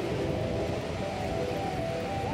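Steady outdoor beachfront background noise: a constant low rumble with faint distant voices.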